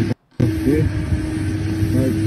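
Phone-video audio of an outdoor street scene: people talking over a running vehicle engine with a steady hum. The sound drops out briefly about a quarter second in as the short clip restarts.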